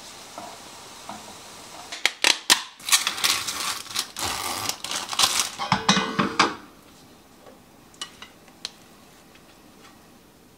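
Cookware clattering on a gas stovetop: a faint sizzle from the skillet, then about four seconds of sharp metal knocks and scrapes as the pan and lid are handled. After that come a few light clicks of a knife against a ceramic plate.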